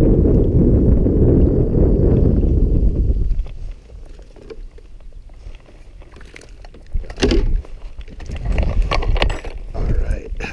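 Wind rumbling on the microphone, heavy for the first three seconds or so and then dropping away sharply. After that come light knocks and clatters of a fishing rod and gear being handled in a canoe, a cluster about seven seconds in and more near the end.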